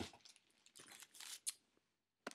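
Faint rustling and handling noise with a sharp click about one and a half seconds in, as things are moved about on the table.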